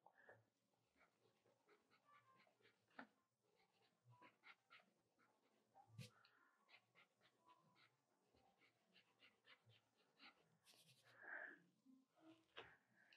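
Near silence, with faint short scratches and ticks of a pencil on drawing paper as the figure is sketched.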